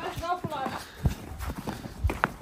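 Footsteps on packed snow: a series of short, irregular crunches, one sharper than the rest about a second in.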